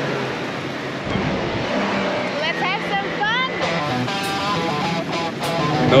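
Steady road and engine noise inside a 4x4 driving over desert sand, with brief rising voice calls in the middle. Background guitar music comes in about halfway through.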